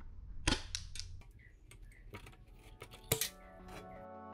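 Tin snips cutting the corners of thin galvanized steel sheet, with sharp clipping snaps: a loud one about half a second in, a few smaller ones, and another loud one just after three seconds. Background music comes in near the end.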